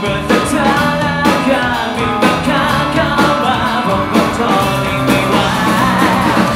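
A rock band playing live: a lead singer singing over acoustic guitar, electric guitar and a drum kit.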